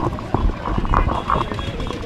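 Irregular knocks and clicks of a handheld microphone being handled and passed to the next speaker, with faint voices behind.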